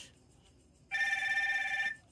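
Aolon GTS smartwatch's find-device alert, set off from the phone app: the watch vibrates with a steady ringing buzz about a second long, starting about a second in. It is the sign that the watch is paired with the phone.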